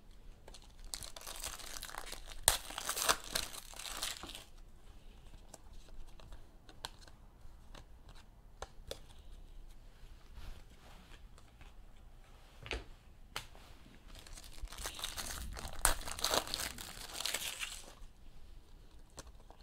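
Foil trading-card pack wrappers of Panini Select basketball packs crinkling and tearing open, in two spells: about a second in and again over the last few seconds. A few light clicks and taps come between them.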